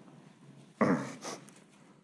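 A man clearing his throat: a short double burst about a second in.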